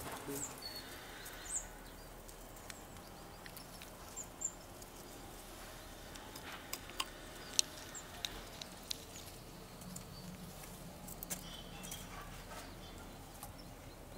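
Quiet outdoor background with a few thin, high chirps from tits and scattered sharp clicks, bunched in the middle.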